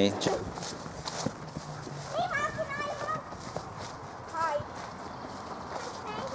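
Faint, high-pitched children's voices in the background, with a few soft knocks and scrapes.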